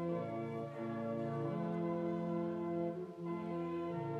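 Church organ playing a hymn in slow, sustained chords that change every second or so.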